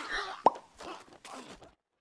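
A single short, sharp pop about half a second in, followed by fainter scattered sounds that die away before the end.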